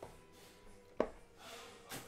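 Faint background music, with one sharp tap about a second in and a short rustle near the end as trading cards and their cardboard box are handled.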